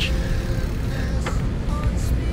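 Steady outdoor roadside noise: a low rumble of wind on the microphone mixed with traffic on the adjacent road.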